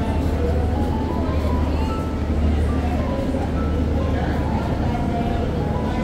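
Voices and music over a steady low rumble.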